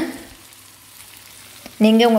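Chicken pieces and onion frying in oil in a pan, a faint steady sizzle.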